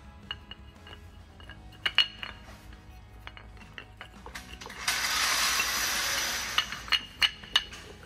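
Carbon brake pads being fitted into a Brembo racing brake caliper: light clicks and clinks of the pads and caliper being handled, a steady hiss about five seconds in lasting a second and a half, then a quick run of sharp clicks.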